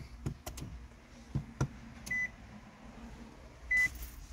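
A few light clicks as the ignition is switched on, then two short high electronic beeps about a second and a half apart.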